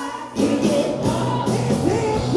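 A live rock band with keyboards, electric guitars, bass, drums and vocals playing a song. The sound dips for a moment at the start, then the full band comes back in with singing.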